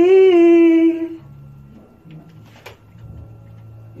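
Male voice singing one long held note of a backing-vocal line, its pitch sagging slightly before it stops about a second in. After that only a faint low hum and a single click remain.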